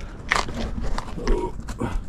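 A person climbing down over stone and rubble: a run of scuffs, knocks and short scrapes from feet and hands, with a short grunt of effort about halfway through.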